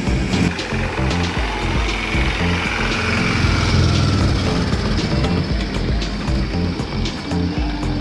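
Music over the low running noise of a miniature diesel ride-on train, with scattered sharp clicks.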